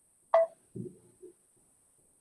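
A short electronic beep, as from a video-call connection, about a third of a second in, followed by two faint low muffled sounds.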